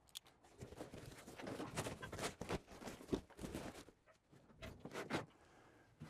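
Handling noise from a heavy hard-plastic tool case being shifted about: scattered knocks, clicks and rustling, with a short lull near the end.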